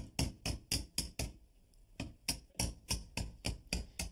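A hammer tapping the end of an old screwdriver held against horsehair plaster, notching a dotted line around a traced outline. The taps are light and quick, about four or five a second, with a pause of about a second near the middle.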